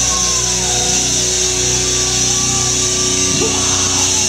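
Rock band playing live, with distorted electric guitar and bass holding sustained ringing notes and only sparse drum hits. A note slides down in pitch during the first second.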